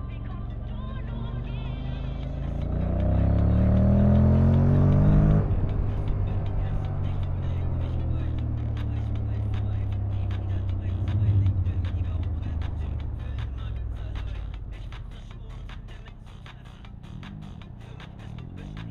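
Honda motorcycle engine heard from on the bike, accelerating with a rising pitch for about three seconds, then dropping abruptly and running on steadily under road and wind noise that fades toward the end. Music plays alongside.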